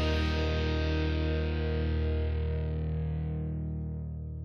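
Closing music ending on a single held, distorted electric guitar chord that rings on and slowly fades away.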